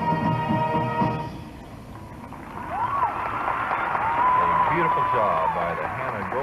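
A marching band holds a final chord that cuts off about a second in. After a short lull, a stadium crowd cheers, shouting and whooping.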